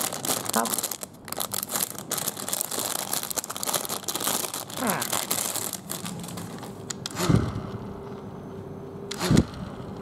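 Clear plastic packaging crinkling and rustling as a toy hand-squeeze fan is pulled out of its bag. Then it turns quieter, with a faint steady whir from the squeezed fan's spinning blades and two soft thuds from handling.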